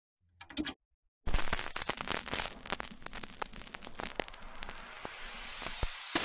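Vintage film crackle sound effect: a short burst, a moment of silence, then a dense run of irregular pops and clicks over a hiss that slowly thins out, the sound of an old-film countdown leader.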